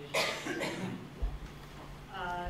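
A person coughing in a meeting room: a harsh cough right at the start and a smaller one about half a second later, followed by a few low bumps.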